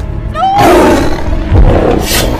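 Bear roaring (a film sound effect), starting about half a second in with a short rising cry that opens into a loud, rough roar, with another loud surge near the end, over orchestral film score.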